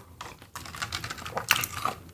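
A person drinking water close to a microphone: a run of small, soft clicks, the sharpest about one and a half seconds in.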